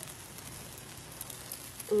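Pancake batter and egg sizzling faintly in a frying pan, a steady fine crackle.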